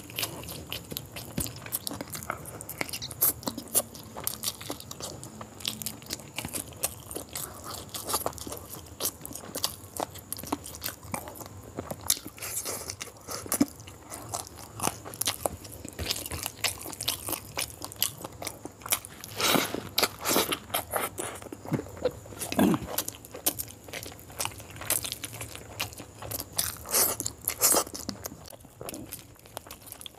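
Close-miked chewing of a mouthful of rice, quail eggs and chicken: dense quick wet clicks throughout, with a few louder clusters past the middle and near the end.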